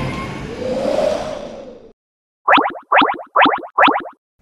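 Irisbus trolleybus driving off, the whine of its electric traction motor rising over road noise and fading out within two seconds. Then a quick run of about five short rising electronic chirps, the loudest sound, as a transition effect.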